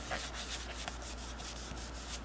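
A cloth rubbed in quick back-and-forth strokes over the black painted finish of a Singer 221 Featherweight sewing machine's bed, buffing sewing machine oil into it. It gives a soft, repeated scrubbing at about six strokes a second.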